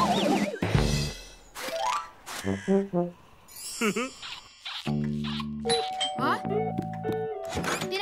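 Cartoon soundtrack: light children's music with sound effects. A deep, soft thud comes just under a second in as the characters fall from the ladder into the snow, followed by short wordless voice sounds and a held musical chord.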